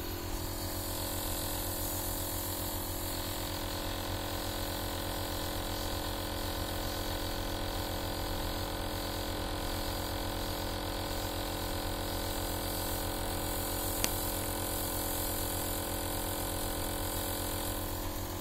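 Steady electric motor hum at a fixed pitch, with a single sharp click about fourteen seconds in.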